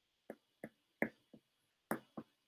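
Pen stylus tapping and clicking on a tablet screen while handwriting a word: five short sharp taps, the loudest about a second in and near the end.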